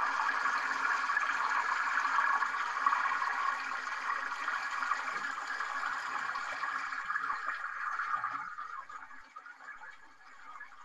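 Running water of a small stream, a steady rushing that drops off about eight and a half seconds in.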